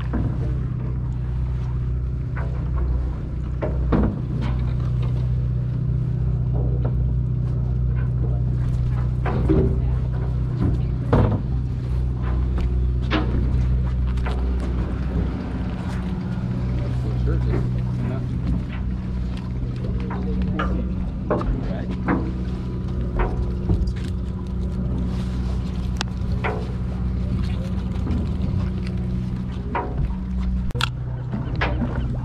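Fishing boat's engine running with a steady low drone. Scattered short clicks and knocks from tackle and handling on deck sound over it, along with distant voices.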